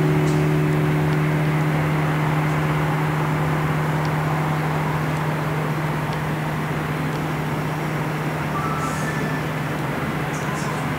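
Cast-bronze church bells by Eschmann (1967) dying away after the ringing has stopped: a low steady hum that fades slowly, while the higher overtones die out within the first few seconds. A few faint ticks sound over it.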